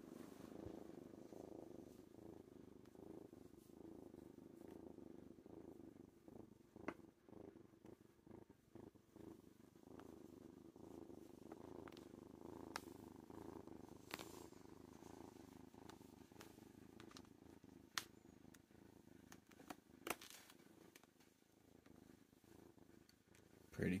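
Young tabby kitten purring, a faint steady purr, with a few faint clicks scattered through it.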